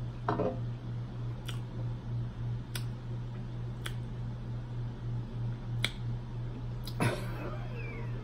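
A steady low hum throughout, with scattered sharp clicks and two short falling vocal-like sounds, one just after the start and a longer one near the end.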